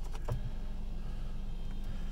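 Electric steering-column adjustment motor of a Mercedes-Benz E-Class humming steadily as the wheel is powered into a new position, with a few small clicks at the start, over the low hum of the idling engine.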